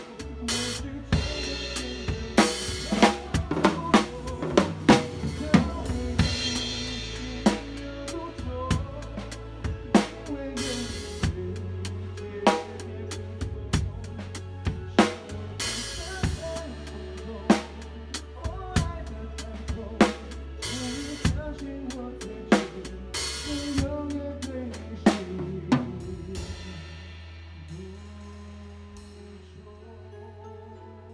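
Drum kit played live with a band: a busy groove of snare, bass drum and cymbal strokes over bass and other instruments. About 26 seconds in, the drumming stops and the band's held notes fade.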